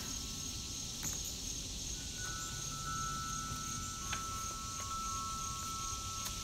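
Crickets chirping steadily, with a few long, clear chime tones ringing over them and faint ticks and rustles of thick journal pages being turned.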